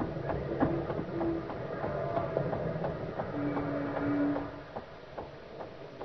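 Radio-drama street sound effects: quick, irregular clicks of footsteps walking on pavement over a steady low traffic rumble, with two long held horn-like tones, one early and one past the middle.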